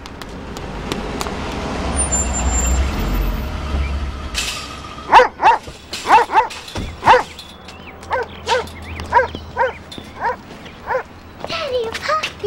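A car pulling up, its engine and tyre rumble rising over the first four seconds. Then a large dog barks repeatedly, about a dozen barks over the next six seconds.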